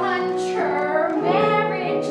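A woman singing a musical-theatre solo with piano accompaniment.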